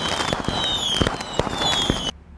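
Fireworks sound effect: dense crackling and popping with several high whistles falling in pitch.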